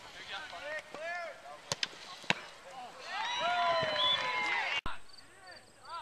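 Players and spectators shouting during a soccer game, with two sharp kicks of the ball about two seconds in. About three seconds in, several voices rise into a loud, sustained yell that cuts off abruptly.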